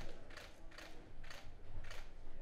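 A series of light, sharp taps, about two a second.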